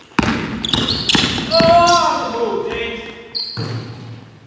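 Basketball bouncing hard on a hardwood gym floor in a large echoing hall, with sneakers squeaking on the court.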